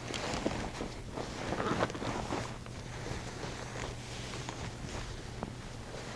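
Bed linens rustling and sliding as a lift sheet is pulled to roll a patient onto her back, with soft handling noises; busiest in the first two seconds, then quieter.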